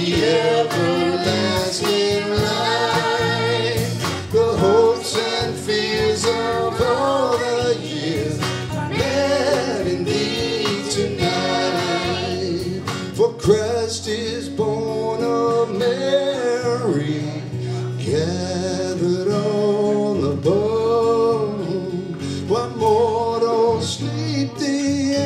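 Live singing with acoustic guitar: a man singing and strumming an acoustic guitar, with a woman and a girl singing along.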